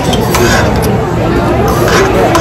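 Steady murmur of voices in a busy restaurant, with a few light clinks and scrapes of a fork and spoon against a metal serving pan.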